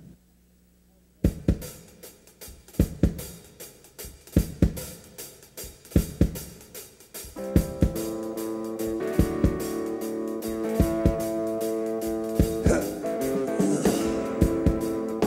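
Live rock band starting a song: after about a second of silence, a drum kit plays alone with kick, snare and cymbals, and about halfway through, sustained electric guitar chords come in over the beat.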